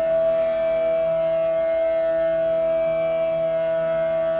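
Bamboo bansuri (Indian transverse flute) holding one long steady note, over a quieter steady drone beneath.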